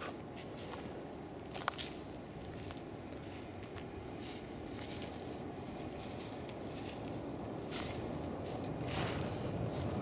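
Soft, irregular footsteps on dry garden soil over a steady outdoor background noise, with a few scattered faint ticks.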